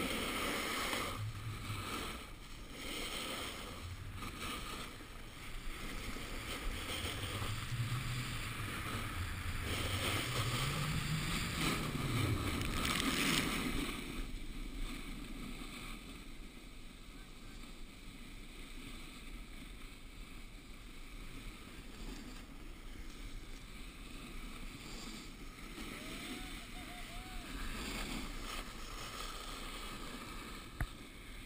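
Snowboard sliding and carving over groomed snow, a continuous scraping hiss mixed with wind rushing over the camera microphone. It is louder and rougher through the first half and settles lower after about halfway.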